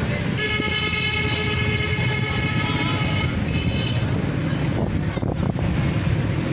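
A vehicle horn sounding one long steady blast of about three seconds, over the low running of an engine and street traffic.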